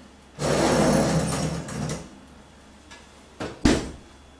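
Metal oven rack with a cake tin on it slid into a built-in oven, a scraping rumble lasting about a second and a half. Then the oven door is shut with two sharp knocks near the end, the second the loudest.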